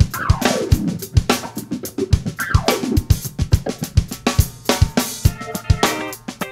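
Recorded music with a busy drum-kit groove of kick drum, snare and cymbals, with two falling pitch slides in the first half and sustained chords coming in near the end.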